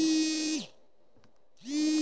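A woman's voice holds the final vowel of a sentence at a steady pitch, stopping about half a second in. After a short pause, a second steady, humming vowel sound at the same pitch comes in near the end.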